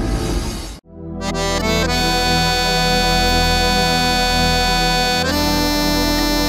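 A dramatic logo-intro music swell cuts off abruptly about a second in. After a brief gap, an electronic keyboard instrumental of Romani music begins: a reedy lead holds long notes over a bass line, moving to a new held note near the end.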